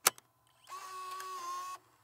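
Sound effects of an animated logo sting: a sharp click, then about a second of steady mechanical whirring carrying a faint steady tone, which cuts off shortly before the end.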